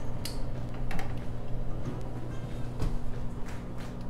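Background music with steady low tones, over a few short clicks and knocks as a metal jar lifter handles a glass canning jar, lifting it from the water bath pot and setting it down.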